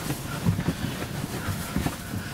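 Rustling and soft knocks as a person lies down and shifts on a bench seat cushion, with a few short bumps about half a second in and again near the end.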